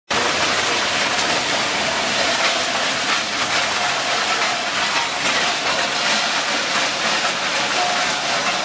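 Metal shredder running as it shreds aluminium iPad casings, a loud steady grinding and rattling laced with dense clicking as the torn aluminium pieces clatter out of the chute onto the pile.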